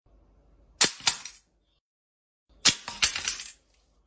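Guillotine cutter blade chopping through an iPhone: sharp cracks of breaking glass and casing, two about a second in, then a quick run of several more near three seconds in.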